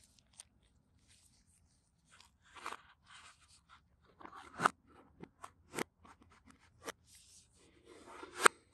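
Folding knife blade slicing the seal stickers along the edges of a cardboard phone box: short scraping cuts and sharp clicks of the blade against the cardboard, the loudest about four and a half seconds in.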